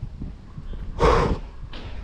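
A man panting, out of breath from a steep uphill walk: one loud, heavy exhale about a second in, then a fainter breath.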